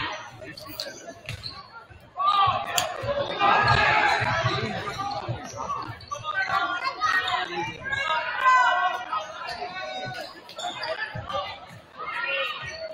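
Spectators chattering close to the microphone, with a basketball bouncing on the hardwood gym floor during play. The talk picks up about two seconds in.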